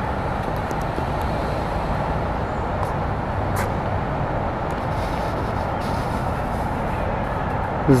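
Steady outdoor background noise, an even rush with no clear single source and a faint click or two about three and a half seconds in.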